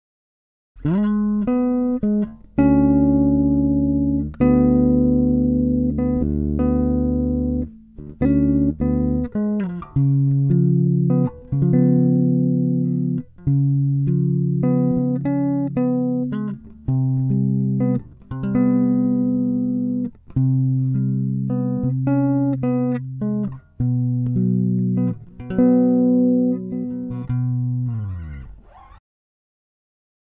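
SX Jazz Bass electric bass played as a melodic line of plucked notes and double-stops, heard as the clean, raw direct signal from the Muslady 422A audio interface. The playing starts just under a second in and ends near the end on a fading note.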